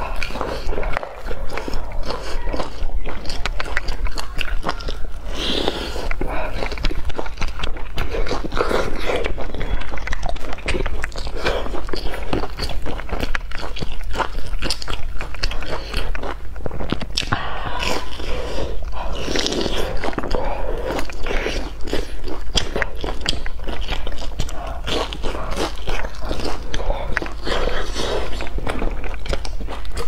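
Close-miked biting and chewing of deep-fried, crumb-coated cakes: a dense, continuous run of crisp crunching crackles from the fried crust between wetter chewing sounds.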